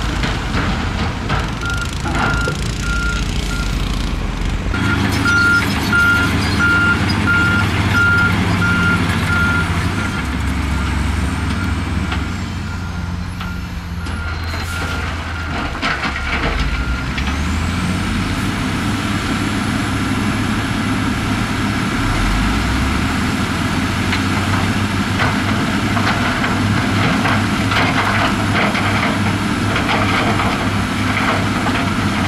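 Diesel engines of heavy construction machines running under load, with a reversing alarm beeping steadily through roughly the first third. A thin high whine rises about halfway through and then holds.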